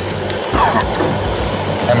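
A man's voice speaking in short fragments, with a steady background hiss and low hum under it.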